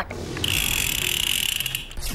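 A rapid, buzzing mechanical rattle with a steady high whine, starting about half a second in and lasting about a second and a half before cutting off.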